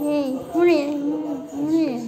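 A high-pitched voice singing three drawn-out phrases, its pitch sliding up and down.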